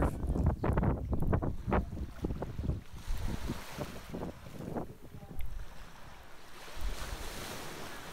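Gentle surf washing up over sand at the water's edge, with wind buffeting the microphone in gusts early on. The hiss of the wash builds again near the end.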